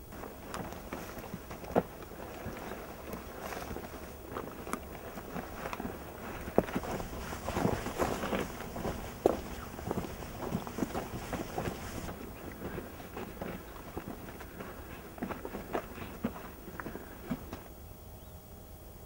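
Boots walking over loose stones and dry scrub: irregular crunching steps and scuffs, thickest in the middle.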